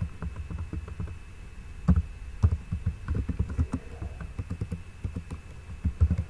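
Typing on a computer keyboard: irregular quick keystrokes with dull thuds, a few heavier strokes about two seconds in and again near the end, as an equation is typed out. A faint steady high tone runs underneath.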